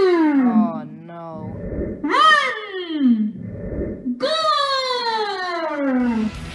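A high voice giving three long wails, each sliding smoothly down in pitch from high to low over about a second and a half.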